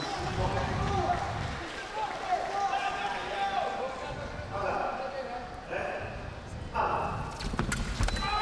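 Distant voices calling out in a large sports hall, with light footwork on the fencing piste and a few sharp clicks near the end.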